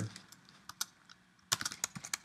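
Computer keyboard typing: a few scattered keystrokes, then a quick run of keystrokes about a second and a half in.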